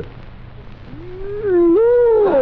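A man's long, drawn-out wordless vocal sound in a ventriloquist dummy's comic voice, starting about a second in, its pitch rising, dipping, then rising again.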